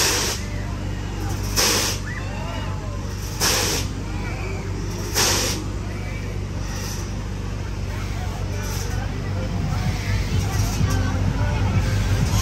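Fairground hopping ride running, with a steady low machinery hum. Four short hisses come about two seconds apart in the first half, over faint crowd voices.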